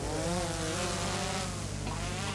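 Quadcopter drone's propellers buzzing as it lifts off, the pitch wavering up and down.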